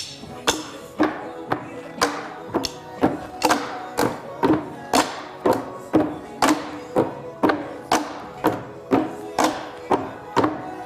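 Upbeat backing music with a steady beat, and drumsticks striking cushioned milk-crate tops in time with it, a sharp hit about twice a second.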